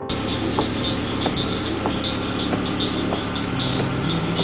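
Steady rushing noise of rain and running floodwater, with a vehicle engine running low underneath and scattered small ticks.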